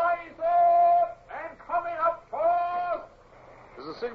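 A man's voice calling out long, drawn-out hails in four or five held phrases: a shipboard lookout hailing the deck on sighting another ship.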